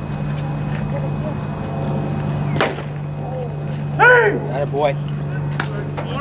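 A baseball pitch caught with a single sharp pop about halfway through, followed a second and a half later by loud, drawn-out shouted calls from a player or the crowd and a few shorter shouts. A steady low hum runs underneath.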